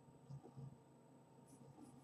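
Faint scratching of charcoal on paper: a few soft strokes, the most distinct about half a second in, over near-silent room tone.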